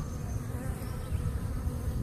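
A swarm of honey bees clustered on a bird feeder, buzzing steadily.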